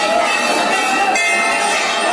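Many hanging brass temple bells ringing at once, a steady din of overlapping held ringing tones.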